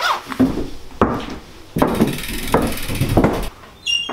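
Irregular knocks and thuds in a small room, about six of them half a second to a second apart: a person's footsteps on a wooden floor as he walks off, and things being handled. A short high tone sounds just before the end.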